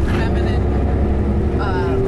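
Low, steady rumble of a bus heard from inside its cabin, with a steady hum that rises slightly in pitch; a voice starts speaking near the end.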